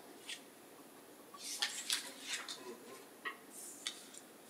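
Faint scattered clicks, taps and rustles of objects being handled close to a microphone in a small room, with a cluster of them in the middle and a short hiss near the end.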